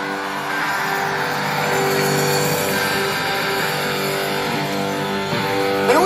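Guitar holding a steady, sustained chord on stage, notes ringing evenly, over a haze of arena crowd noise.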